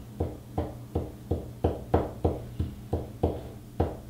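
Ballpoint pen tip tapping repeatedly onto a paper cut-out on a table, about three taps a second, over a faint low hum.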